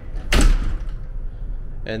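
A glass door swinging shut with one loud thud about half a second in.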